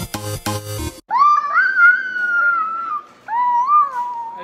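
Background music for about the first second, then a toddler's voice making two long, high-pitched squeals. The first rises and holds for about two seconds before sliding down; the second, shorter one comes near the end.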